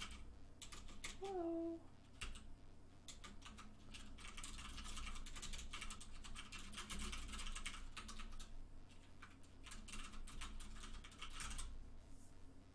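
Computer keyboard being typed on in quick runs of keystrokes, with short pauses between the runs.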